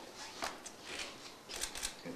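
A few short, sharp clicks, one about half a second in and two close together near the end, over faint rustling.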